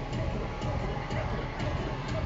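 A steady rush of wind and sea water churning alongside a ship, with faint music playing under it.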